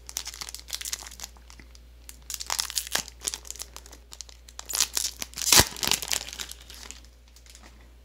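A foil trading-card booster pack being torn open by hand: crinkling and crackling of the foil wrapper with sharp rips, the loudest rip a little past the middle.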